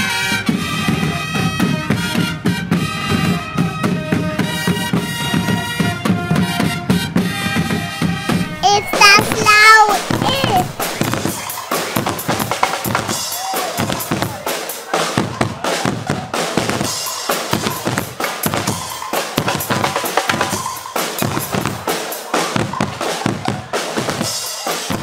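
Marching brass band music: trumpets holding chords over bass drum and snare drum for the first several seconds, then a louder, more drum-heavy section with sliding brass notes from about nine seconds in.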